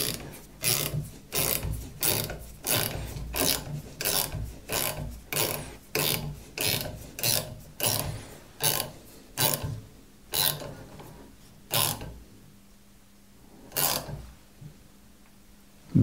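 Ratcheting wrench clicking in steady strokes, about two a second, as it turns a nut that draws up and sets a rivet nut in sheet metal. The strokes thin out after about ten seconds, with a few last widely spaced clicks.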